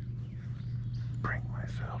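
A man whispering, with a steady low hum underneath.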